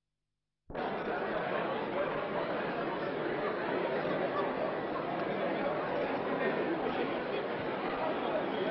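Hubbub of a crowd of many people talking at once, an indistinct steady chatter in a large hall. It cuts in suddenly after silence, under a second in.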